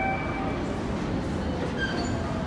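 An MBTA Green Line light rail train approaches through the subway tunnel: a steady low rumble of wheels on rails carrying into the station, with a few brief thin squealing tones near the start.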